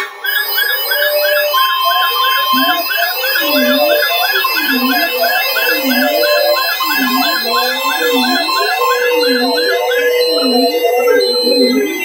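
Several weather alert radios sound their electronic alarms at once, overlapping warbling sirens that mark a newly received warning. A low swooping tone repeats a bit more than once a second under a fast high chirp about three times a second. Short high beeps join about halfway, and the chirping stops near the end.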